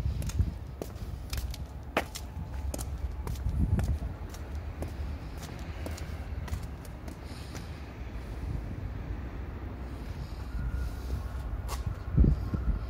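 Footsteps of a person walking, sharp steps about twice a second at first and more scattered later, over a steady low rumble.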